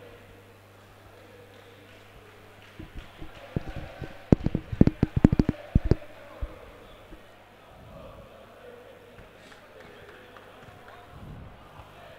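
A low, steady electrical hum on the commentary audio, a fault that the commentators say shows up when the equipment is touched. About four to six seconds in comes a rapid cluster of loud knocks and thumps, like the microphone or its cable being handled. Faint arena crowd noise lies beneath.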